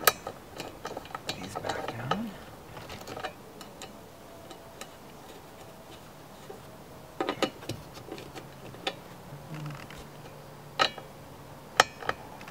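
Socket ratchet clicking as the wiper-arm nut is turned, with a quick run of ticks in the first few seconds. There are louder sharp metal clinks of the socket and wiper arm about seven seconds in and again near the end.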